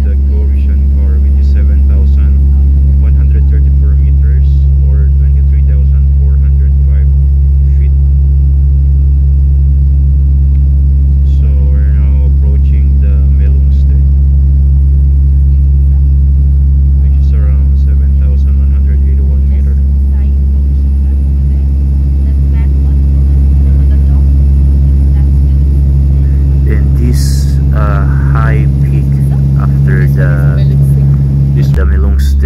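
Cabin drone of a turboprop airliner in cruise: a loud, steady low hum with a few steady tones above it. Voices come faintly through the drone now and then.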